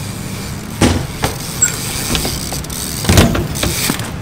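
BMX bike riding on skatepark concrete and ledges: several sharp knocks from the bike's wheels and frame striking the ground and boxes, the loudest about three seconds in, over a steady low rumble.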